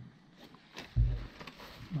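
A nylon MTB backpack being handled on a table, with light rustling and clicks of its fabric and straps. A single low thump comes about a second in as the bag is turned over.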